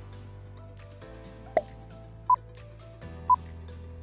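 Background music under a quiz countdown timer: a short click about one and a half seconds in, then short beeps once a second, two of them, ticking off the seconds.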